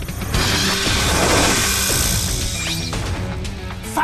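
Cartoon battle sound effects: a long, loud, noisy crash over a dramatic music score, with a short rising sweep near the end.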